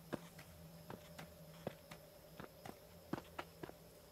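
Faint footsteps: a dozen or so short, irregularly spaced steps over a faint steady hum.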